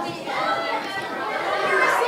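A group of children chattering at once, many voices overlapping.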